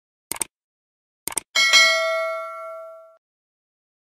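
Subscribe-button animation sound effects: two quick mouse clicks, then a bright bell ding, the loudest sound, that rings and fades for about a second and a half before cutting off.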